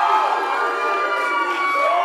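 A church congregation cheering and calling out together, many voices overlapping at a steady, loud level.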